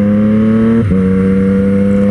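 Triumph Street Triple 765 RS's inline three-cylinder engine pulling under acceleration, its note rising steadily. A little before halfway it dips sharply in a quick upshift and carries on at a lower pitch.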